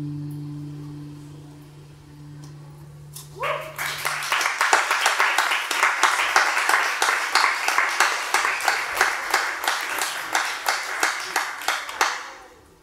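A jazz trio's last chord rings out as two low held notes and fades away. About three and a half seconds in, audience applause breaks out and carries on steadily.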